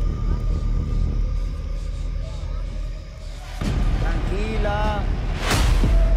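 Television show sound bed: a steady low rumbling score, with a brief voice about four seconds in and a short whoosh near the end as the picture cuts.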